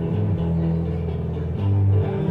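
Live music between sung lines: guitar playing a low, repeating riff, with a louder low-end hit near the end.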